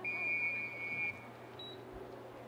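A referee's whistle: one steady, high blast lasting about a second, followed a moment later by a short, fainter, higher peep.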